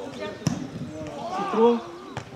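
A football kicked, one sharp thud about half a second in, over faint open-air field noise. Near the end a spectator exclaims 'ah, oh', the loudest sound here.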